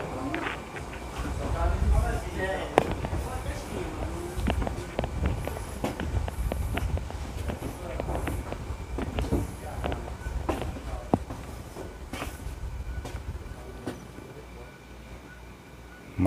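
Faint conversation in the background, with a low uneven rumble and scattered sharp knocks and clicks.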